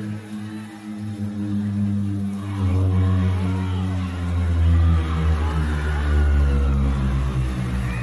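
Live band music on a concert stage: sustained chords are held, and about two and a half seconds in a heavy low rumble swells up under them, with wavering high sounds above.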